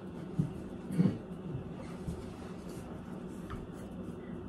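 Quiet handling and rustling as a doll on a wooden stand is lifted up and set on a table, with a brief bump about a second in and a small click near the end.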